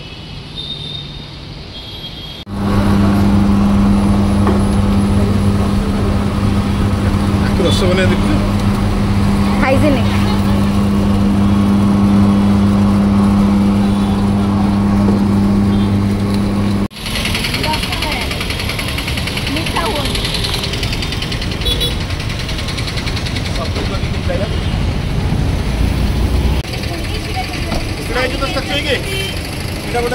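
Electric sugarcane juice machine (Mr. Real Cane) running with a steady low hum as a sugarcane stalk is fed in and crushed; it starts suddenly a couple of seconds in and cuts off about halfway through. After that comes street noise with traffic and some voices.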